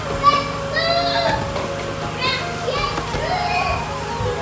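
Children's high-pitched voices calling out, in two spells: one soon after the start and one in the second half, over a steady low hum.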